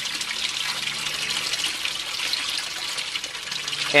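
Water pouring in a steady stream from a PVC grow-bed drain pipe into an aquaponics fish tank and splashing on the surface, the bell siphon running at full flow.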